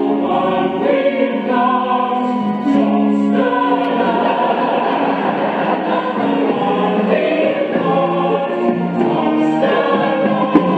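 The cast of a stage musical singing together as a chorus over musical accompaniment, in long held chords, with a denser, fuller passage in the middle.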